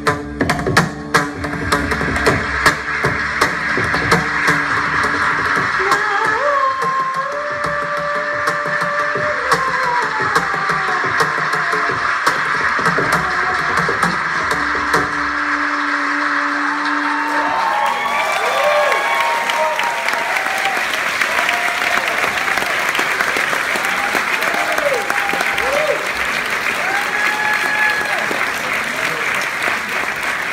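A traditional Indian double-headed barrel drum plays a last run of sharp strokes for about two seconds, then an audience applauds at length with cheers and whoops, the applause swelling a little past the middle.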